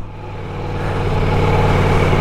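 Ducati Multistrada V4 S's V4 engine running steadily under a steady rush of noise as the bike wades through deep floodwater, the sound slowly growing louder.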